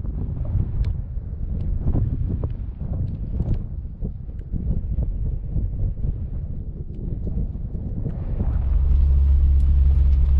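Wind buffeting the microphone in uneven gusts. About eight seconds in, this gives way to the steady low drone of a Jeep Wrangler driving, heard inside the cabin.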